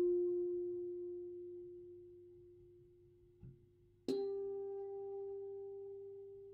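Paper-strip music box playing very sparse notes: one comb tooth rings and slowly dies away over about three seconds, then a slightly higher note is plucked about four seconds in and rings on.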